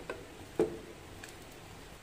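Small sweet potato balls dropping off a plastic spatula into a pot of boiling water: a few short plops, the loudest about half a second in, over a faint steady hiss of the boiling water.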